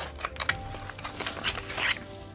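A box of liquid lipsticks being handled and opened: a string of light, irregular clicks and rustles.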